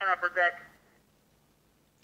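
A brief snatch of police two-way radio speech from a Uniden SDS100 scanner's speaker: a man's voice gets out a couple of words and cuts off about half a second in, with a short trailing tone, followed by near silence.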